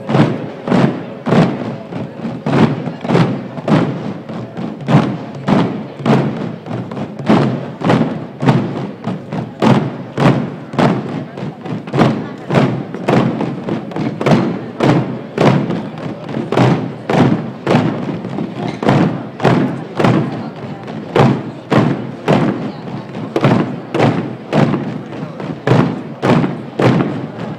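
Processional drums beaten together in a slow, steady march beat, somewhat under two strikes a second.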